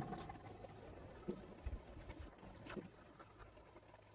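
Near silence: faint low room tone with a couple of soft ticks.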